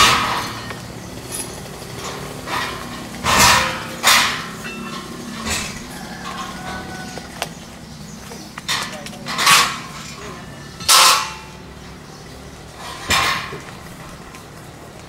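Steel stage-frame pipes and truss sections being unloaded and dropped on the ground: a series of sharp metallic clanks, each ringing briefly, coming irregularly every second or few seconds.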